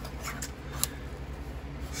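Handling of a steel pistol magazine and a leather holster: a few light clicks and rubs as the magazine is pushed into the holster's pouch.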